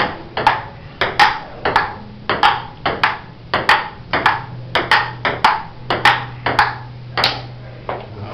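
Table tennis rally: the ball ticking off bats and table in quick alternation, about three sharp clicks a second, until the rally stops near the end.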